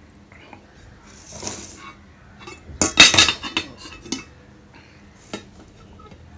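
Stainless steel dishes clattering: a soft scrape, then a cluster of loud metal clinks about three seconds in as a steel bowl and spoon knock against a steel plate. A few lighter clinks follow.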